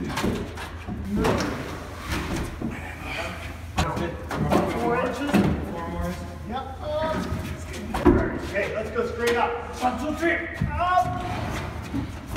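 A heavy pre-built wooden staircase being pushed and shifted into place, giving several knocks and thumps, the loudest about eight seconds in, under the crew's voices calling to each other.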